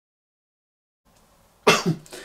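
Silence, then faint room tone and near the end a single loud, short cough from a man.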